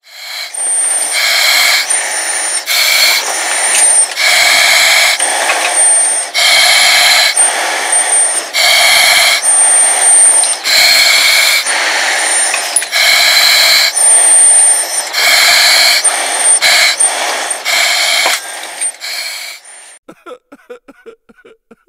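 Breathing through a firefighter's oxygen mask: loud hissing breaths through the mask's regulator, roughly one every two seconds, with a thin high whistle running through some of them.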